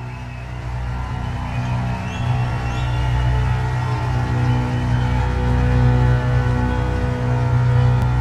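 Instrumental music intro: a sustained low drone under held notes, growing steadily louder.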